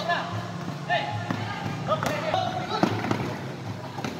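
Basketball game sounds: a ball bouncing on the court with a few sharp thuds, short squeaks from the players' shoes, and voices of people courtside over a steady low hum.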